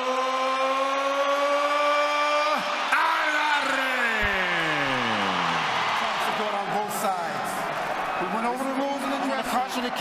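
A ring announcer's voice over the arena PA stretching a fighter's name into one long held call that drifts slightly upward and then stops abruptly, followed by a second call that glides steadily down in pitch. The crowd's roar carries on beneath and after it, and a man begins speaking near the end.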